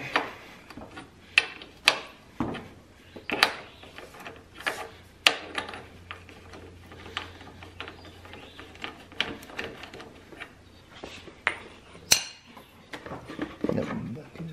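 Irregular sharp metallic clicks and clinks of a ratcheting wrench being worked on the 28 mm bolt of a lawn tractor's aluminium oil filter housing, the loudest about twelve seconds in.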